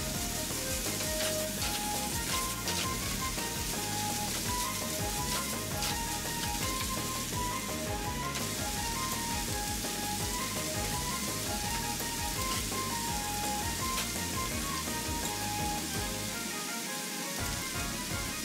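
Background music with a light melody over the steady sizzle of vegetables frying in a pan, with occasional faint clicks of chopsticks against the cookware.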